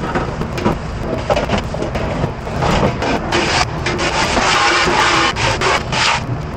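A stainless steel hotel pan being scrubbed and handled at a metal sink, with rubbing and knocks. About halfway through, a pre-rinse spray hose hisses water onto the steel, over a steady low rumble.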